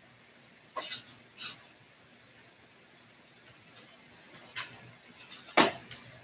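A few light, sharp clicks and taps of small tools and parts being handled on a workbench, scattered unevenly, the loudest shortly before the end.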